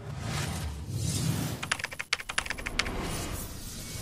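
A news channel's end-card sound effect: a low rushing sweep, then a fast run of sharp clicks lasting about a second, halfway through.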